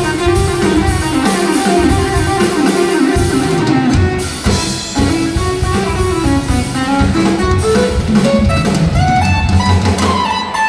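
A live jazz-pop band playing: electric guitar, keyboards and a drum kit, with a busy melodic line moving up and down through the middle register over the drums.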